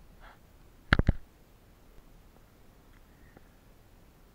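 Two or three sharp clicks in quick succession about a second in, over a quiet background.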